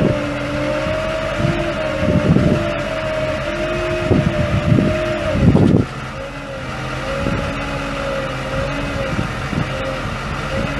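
GMC C4500 truck's Duramax 6.6L V8 turbo diesel running steadily with a constant whine, while gusts of wind buffet the microphone several times in the first six seconds.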